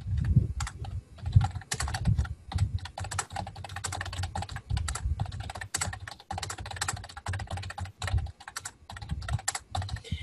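Typing on a computer keyboard: a quick, irregular run of keystroke clicks with short gaps between bursts.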